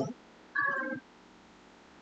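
A single short pitched vocal sound, about half a second long, about half a second in, over quiet room tone.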